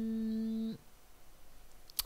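A man's voice holding one long, flat hesitation sound ('euh') at a steady pitch, cut off under a second in. Then quiet room tone, and a single sharp computer-mouse click just before the end.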